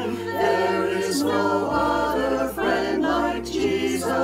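Small mixed choir of men and women singing a hymn in harmony, their voices recorded separately and blended into one virtual choir.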